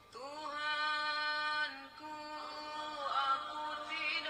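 A ringtone playing loudly through the Nubia Z11 smartphone's loudspeaker: a melody of long held notes, the first held for about a second and a half. It reads about 94 dB on a sound level meter held beside the phone.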